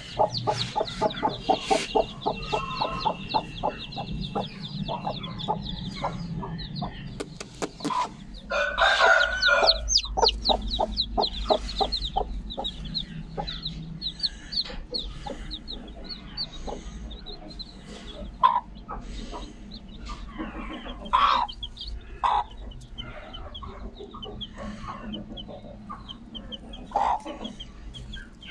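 A mother hen clucking over her chicks, mixed with the chicks' high peeping. The calls come in a quick, dense run for about the first half, then thin out to scattered clucks and peeps.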